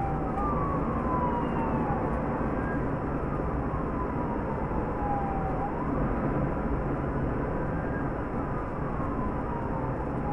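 Police siren wailing in slow cycles, each a quick rise in pitch followed by a long slow fall, about twice. It sounds over the steady engine and tyre noise of the moving patrol car.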